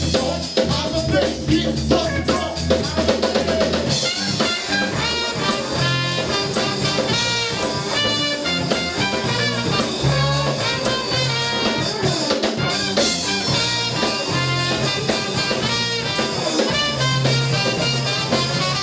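Live band playing a funky number on electric guitar, drum kit and trumpet, with a busier melodic line coming in about four seconds in.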